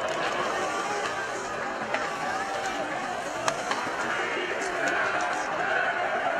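Ice hockey arena crowd murmuring and chattering, with faint music over the PA. Two sharp clacks of sticks and puck on the ice cut through, about two and three and a half seconds in.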